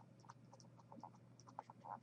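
Faint stylus strokes on a tablet screen during handwriting: a string of short, soft scratches and ticks, several a second, over near silence.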